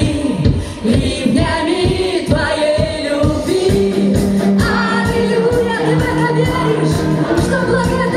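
A woman sings a worship song into a microphone with a live band, an electric bass guitar playing under her voice. Held low notes come in about halfway through.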